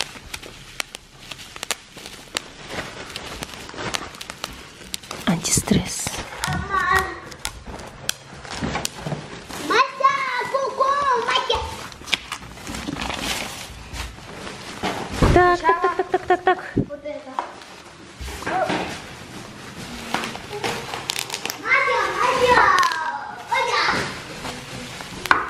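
Bubble wrap being popped by hand: many sharp little pops at irregular intervals, mixed with the crinkle of plastic packaging. Children's voices break in now and then.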